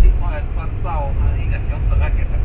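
Road vehicle driving, heard from inside the cabin: a steady low rumble of engine and road noise, with muffled voices talking in the background.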